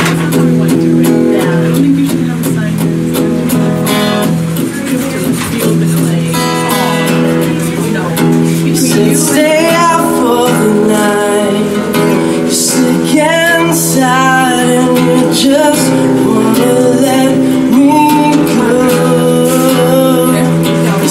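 Acoustic guitar being strummed and picked in steady chords, with a voice coming in over it about halfway through.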